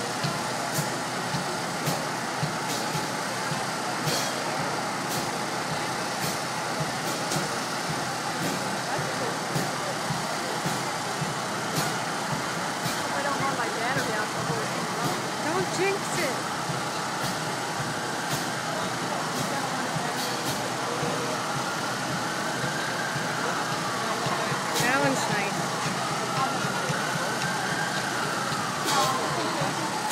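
Busy city street noise: steady traffic and crowd hubbub. From about two-thirds of the way in, an emergency-vehicle siren wails, slowly rising and falling in pitch.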